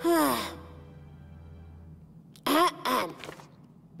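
A cartoon character's voiced sigh, falling in pitch, at the start, then two short breathy vocal sounds a little past halfway.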